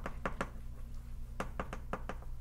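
Chalk tapping and clicking against a blackboard while writing: two sharp taps near the start, then four quicker ones in the second half.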